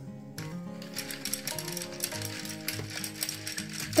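A thin metal stirrer clicking and rattling rapidly against the side of a cup as rooting-powder water is stirred.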